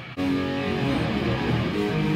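Electric guitar comes in just after the start, playing a riff of held chords through an amp.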